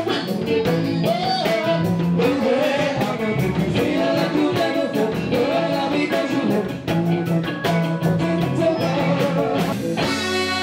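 Live R&B band music: a lead vocal sung over electric guitar and a drum kit keeping a steady beat.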